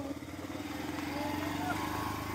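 A vehicle engine running with a steady note, growing gradually louder.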